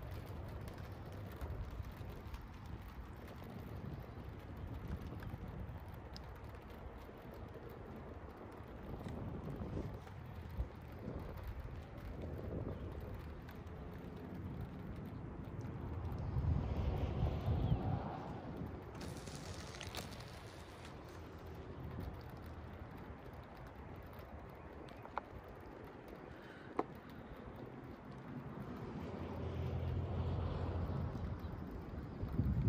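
Wind rumbling on the phone's microphone, a steady low noise that swells for a couple of seconds about halfway through, with a few faint clicks.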